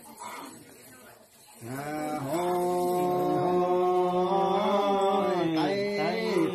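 A man chanting one long drawn-out note with a slightly wavering, nasal quality. It comes in about one and a half seconds in after a brief pause, holds nearly level for about four seconds, and drops away near the end.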